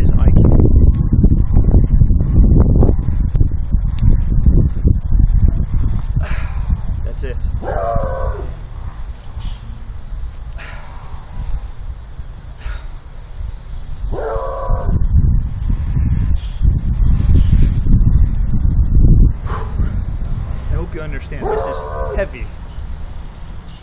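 Heavy wind rumble on the microphone. Three short pitched yelps or barks come about six to seven seconds apart.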